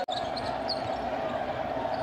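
Basketball arena game sound during live play: steady crowd noise and court sounds. A brief dropout right at the start marks an edit cut between clips.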